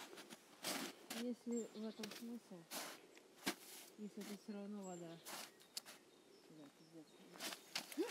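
Boots crunching into snow with slow, spaced steps, a few seconds apart, mixed with soft, indistinct talking.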